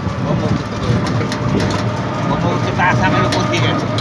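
A vehicle's engine running steadily under a low rumble of road noise, with short snatches of voices.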